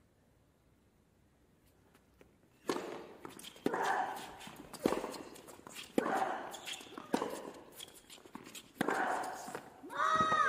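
Tennis rally: after a quiet start, about six racket strikes on the ball roughly a second apart, beginning with the serve a little under three seconds in, each shot followed by a player's grunt.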